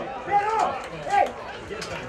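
Men's voices shouting out on a football pitch: two short raised calls about half a second and a second in, with a few faint sharp knocks around them.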